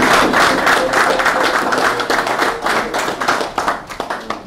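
A roomful of people applauding: dense hand clapping that thins out near the end.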